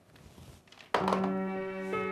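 Near silence, then a thump about a second in as soft background music starts suddenly: slow, sustained keyboard chords.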